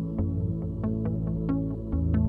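Instrumental background music: a quick, even run of short notes over held low bass notes.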